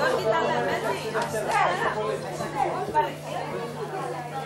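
Several people chatting at once in a large hall, their voices overlapping, with a steady low hum underneath.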